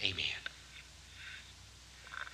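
Speech only: a man's voice says a short 'Amen', followed by faint breathy, whispery murmurs over a steady low hum of an old recording.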